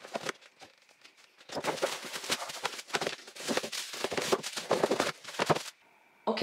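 Paper packaging crinkling and rustling as a gift box is unpacked by hand: a few faint clicks at first, then a dense run of crackling that stops shortly before the end.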